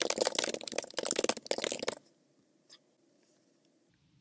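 Computer keyboard typing: a fast run of keystrokes for about two seconds, then it stops.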